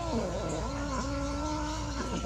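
A kitten's long, low, drawn-out yowl, a hostile warning cry at the other kitten. It wavers in pitch and dips briefly twice.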